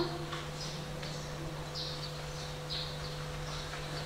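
Pause in a sung poem recitation: a steady low hum of room tone, with faint, short, high chirps of small birds scattered through it every half second to a second.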